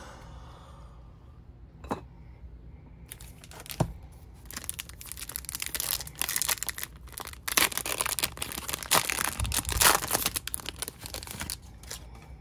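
Hands tearing open the wrapper of a Topps Series 2 baseball card retail pack. The wrapper crinkles and rips in a run of rustling that starts a few seconds in and is loudest near the end. A couple of light knocks come before it.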